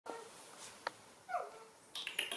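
A baby macaque gives a short, high call that falls in pitch, about a second and a half in. A sharp click comes just before it, and a fainter short call sounds near the start.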